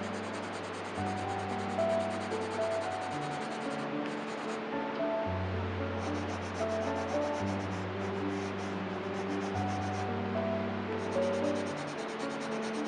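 Pencil shading on sketchbook paper: a rapid, scratchy rubbing of back-and-forth strokes that pauses briefly about four seconds in and again near ten seconds. Calm background music with slow, changing bass notes plays throughout.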